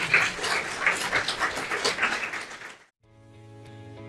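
Audience applauding, cut off suddenly about three seconds in; music with steady held notes starts right after.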